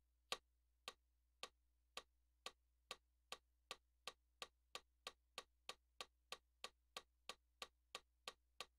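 Metronome-style click track: sharp, evenly spaced clicks that speed up from about two a second to about three a second.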